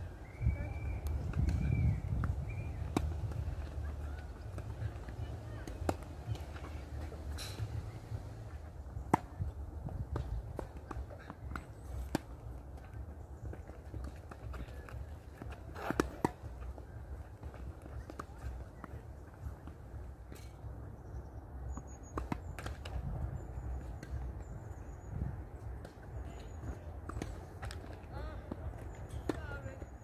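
Tennis rally on a hard court: tennis balls struck by rackets and bouncing, heard as sharp irregular pops spaced a second or more apart, the loudest about 16 s in, over a low steady rumble. Small high bird chirps come in during the second half.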